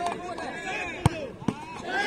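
Penalty kick in football: a sharp thud about a second in and a fainter knock half a second later, over the chatter of a watching crowd.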